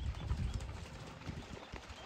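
Dobermans running through shallow flood-irrigation water: a quick, irregular patter of splashing footfalls that grows fainter.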